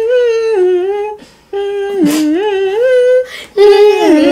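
A person humming a short melody in held notes that step up and down, with two brief breaks. It is a tune hummed as a guess-the-song quiz clue.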